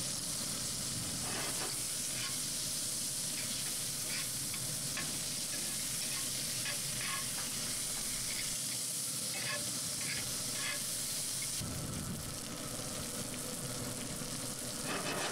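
Sliced red onions frying in butter in a hot cast-iron skillet: a steady, even sizzle, with scattered light clicks and scrapes of a metal utensil stirring them.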